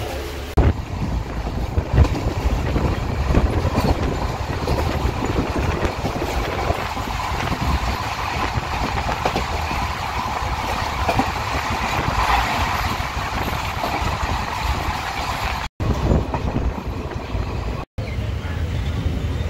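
Running noise of a moving passenger train, a steady rumble. It cuts out briefly twice near the end.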